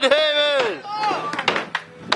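A held, wavering voice rising and falling in pitch, then a few sharp clacks of a skateboard striking a wooden mini ramp about a second and a half in.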